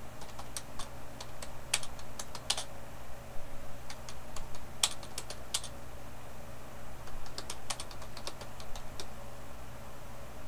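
Typing on a computer keyboard: irregular key clicks, some in quick runs, over a steady low hum.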